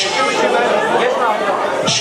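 People talking and chattering in a large hall.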